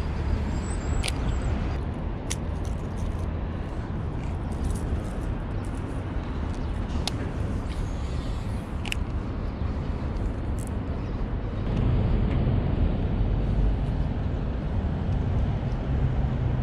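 Steady rumble of road traffic, with a few brief, sharp clicks scattered through it.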